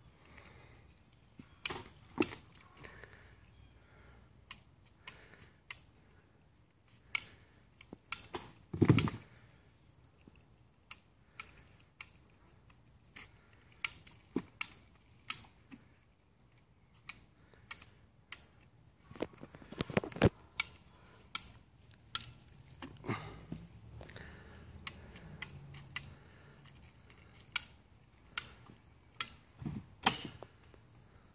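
Irregular sharp clicks and knocks, one every second or so, with a couple of louder knocks about nine and twenty seconds in.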